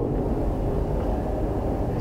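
Steady low rumble with a faint hiss: the background noise of the hall and sound system, heard in a pause between a speaker's phrases.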